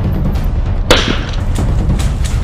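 A single sharp bang about a second in, from an airsoft grenade going off near the enemy, over background music.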